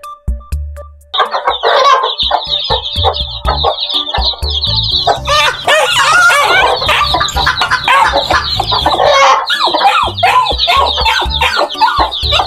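A brood of baby chicks peeping rapidly and continuously, with a hen clucking among them, starting about a second in. Background music with a low beat runs underneath.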